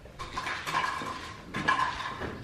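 Plastic toys clattering: stacking cups and a plastic basket knocking together as a toddler handles them, in a run of light knocks.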